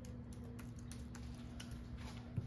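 Typing on a MacBook laptop keyboard: quick, irregular key clicks, several a second, over a faint steady hum.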